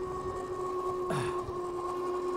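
Electric hub motors of a Philodo H8 all-wheel-drive e-bike whining steadily at cruising speed, a constant two-note whine over wind and tyre rumble. A brief hiss comes about a second in.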